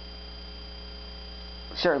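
A steady electrical hum with a thin, faint high whine above it, unchanging throughout.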